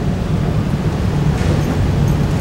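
A steady low rumble of room noise, with no voices standing out.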